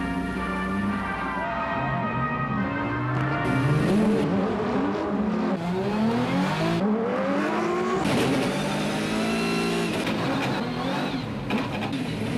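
Race car engines revving, their pitch rising and falling again and again, with several engines overlapping.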